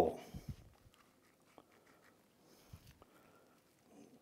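Near silence with a few faint, soft, short handling sounds as gloved hands pack a ground-beef and cheese mixture into an uncooked manicotti shell; the tail of a spoken word at the very start.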